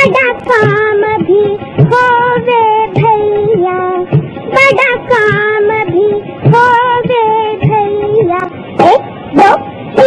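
A child singing a slow melody with long held notes. Two quick rising whistle-like sweeps come shortly before the end.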